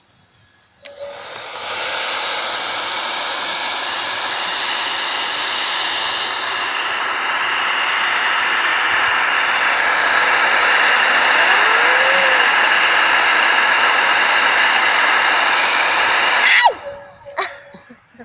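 Britânia hand-held hair dryer running steadily, blowing hot air down onto a row of wax crayons to melt them: a steady rush of air with a faint fan whine. It switches on about a second in and cuts off suddenly about a second before the end.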